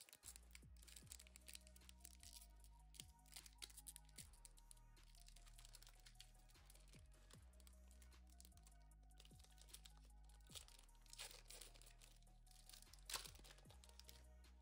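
Quiet background music with a low bass line, under the crinkling and tearing of a foil trading-card booster pack being opened by hand.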